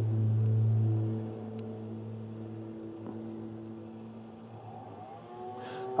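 Hedge trimmer motor running with a steady droning note, loudest for the first second, then easing off and building again near the end.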